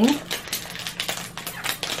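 A few sharp clicks and taps at irregular intervals, from small objects being handled.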